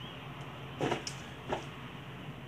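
Faint handling noises from gloved hands at work: two brief soft sounds, about a second in and again half a second later, over a low steady room background.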